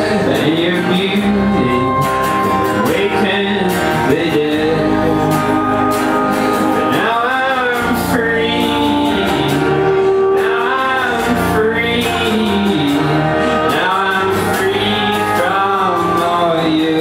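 Live acoustic band performance: a man singing over a strummed acoustic guitar, with other instruments accompanying. The vocal phrases come and go over a steady instrumental bed.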